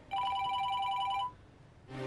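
A telephone ringing once: a warbling two-tone ring lasting about a second.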